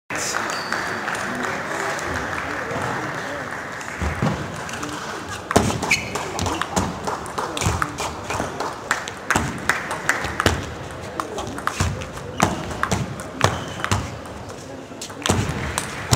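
Table tennis rally: the celluloid ball clicks sharply off the bats and the table in quick, irregular succession, starting about five seconds in and running for about ten seconds, with the echo of a large hall. Before the rally there is a steady murmur of voices.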